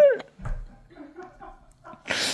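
Stifled, squealing laughter: a loud high squeal falling in pitch at the start, then faint breathy wheezes, with a low bump about half a second in.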